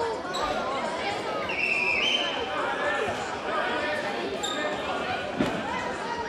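Futsal play in an echoing sports hall: voices calling out, a brief high squeak about one and a half seconds in, and a sharp thump of the ball being kicked near the end.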